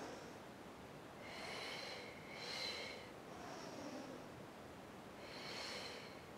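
A Pilates instructor's audible breathing through the saw exercise: two strong, hissing exhales back to back about a second in, a short faint inhale, then another strong exhale near the end.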